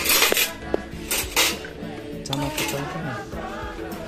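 Metal serving spoons and ladles clinking and scraping against aluminium cooking pots and steel plates as food is dished out, the loudest clatter right at the start and again about a second in. Background music plays underneath.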